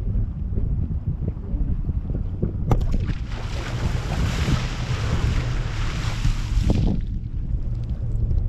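Steady wind rumble on the microphone, with a hiss of splashing spray for about three seconds in the middle as the parasail riders' feet and legs drag through the sea surface during a dip.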